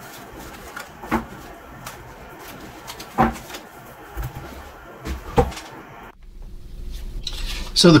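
Tarot cards being gathered off a tabletop and the deck tapped square, with light rustling of cards and three sharp knocks about two seconds apart. After about six seconds the card sounds stop and a quieter room tone follows until a man's voice comes in at the very end.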